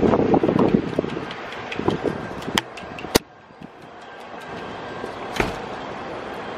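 Camera handling and wind rumble on the microphone as the camera swings, then a few sharp clicks and knocks, the loudest about three seconds in, after which the background goes quieter.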